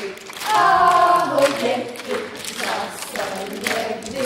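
Several voices singing a cheerful song together in Czech, with long held notes, loudest in the first second and a half.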